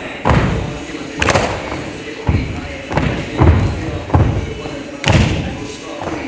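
Pop dance track playing with vocals, cut by a series of heavy thudding hits, about seven of them, unevenly spaced.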